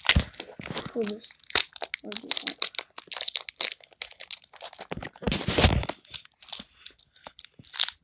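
Plastic foil wrapper of a Pokémon trading-card booster pack crinkling and tearing as it is pulled open by hand, with a louder, longer rustle about five seconds in.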